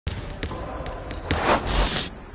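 Podcast intro sound effect: a basketball bouncing a few times over a noisy background, then getting louder in a rising swell near the end.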